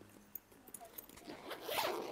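Zipper on a fabric insulated bag being pulled open in one run of about a second, starting about halfway in, after a few faint clicks of handling.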